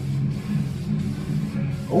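Aerosol can of VHT Nightshade spray tint hissing steadily as a heavy coat is sprayed onto car window glass.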